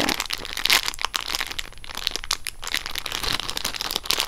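Clear plastic packaging crinkling and crackling irregularly as hands squeeze and turn packaged edamame bean squeeze toys.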